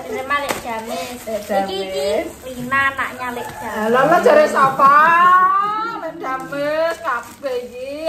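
People's voices talking and laughing excitedly, with the loudest, high rising exclamations about four to five seconds in.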